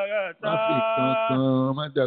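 A man's voice in melodic chanted recitation with long held notes, breaking off briefly about a third of a second in and again near the end.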